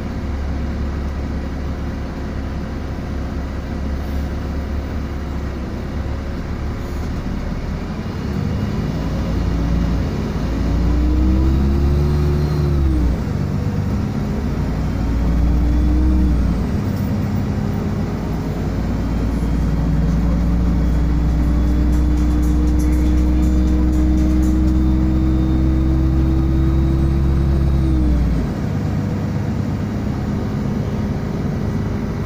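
City bus engine and drivetrain heard from inside the cabin as the bus gets moving: a deep rumble with a whine that rises in pitch, drops sharply as it shifts gear, then rises again. It then holds a long steady note as the bus cruises and winds down near the end.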